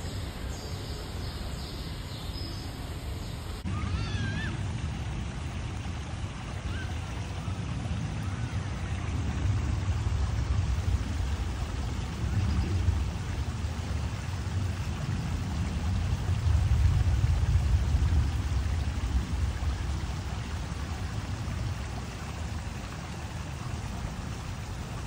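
Water trickling and splashing over rocks into a small garden pond: a steady running-water sound with a strong low rumble. A few short high chirps come just after it starts. Before it, a few seconds of steady background hum.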